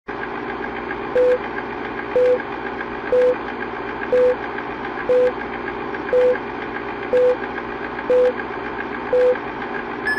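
Old-film countdown sound effect: a film projector running steadily under a short mid-pitched beep once a second, nine beeps in all.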